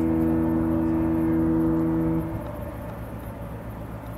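Disney cruise ship's musical horn holding one long chord-like note, which cuts off about two seconds in and leaves a low steady rumble.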